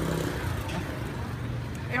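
A low, steady hum of a running engine, like a vehicle idling nearby, under faint background voices.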